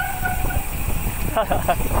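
Wind rushing over the microphone and road rumble from a bicycle rolling on a concrete road, with a steady whine that stops about half a second in. A short laugh comes near the end.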